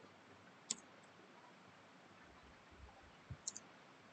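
A few faint computer keyboard keystroke clicks over near-silent room tone: one click under a second in, then a quick pair near the end.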